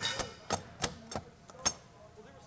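Design Hardware 2000V vertical-rod panic bar pushed and let go as a function test: a brief metallic ring from the mechanism at the start, then several sharp clacks and clicks as the latch and top rod work and spring back, the last click near the end the loudest. The device is working properly.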